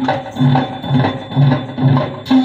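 Dance music with a steady low beat, about two beats a second, and short higher notes over it.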